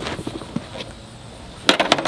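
Snow shovel blade knocking and scraping on a concrete driveway: a low scuffing, then a quick cluster of sharp clacks near the end.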